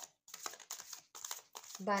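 A tarot deck being shuffled by hand: a run of short papery rustles and flicks as the cards slide and drop against each other.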